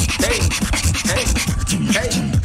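A beatboxer performing: a fast run of sharp clicks and hissing hi-hat sounds over deep bass beats, with short pitched vocal swoops.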